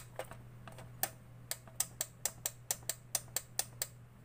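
Rapid, uneven sharp clicks, about four a second, from a homemade CRT picture-tube cleaner box as it is switched on and off over and over to pulse current through a dirty picture tube, over a steady low mains hum.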